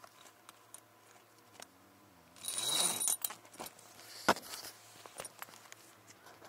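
Handling noises from inside a parked car: a short burst of rustling and scraping about two and a half seconds in, then a sharp click a little after four seconds and a few lighter ticks, as a window cover is moved and the car is opened up.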